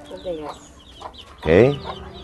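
Chickens clucking, with one louder call about one and a half seconds in.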